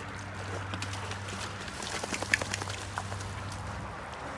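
A wet dog climbing out of a swimming pool up the steps onto a wooden deck: water dripping and splattering off its coat, with scattered light taps of its paws and one sharper tap a little past two seconds in. A low steady hum runs underneath.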